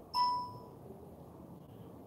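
A short electronic notification chime from a device, a single clear ding that fades within about half a second.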